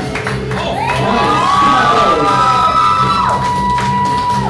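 Dance music playing loudly with a crowd cheering and whooping over it, swelling about a second in and easing near the end.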